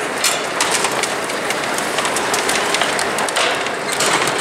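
Red plastic shopping cart rattling and clattering as it rides down an inclined cart escalator (Vermaport) to the bottom, a steady run of many small clicks over a rolling hiss.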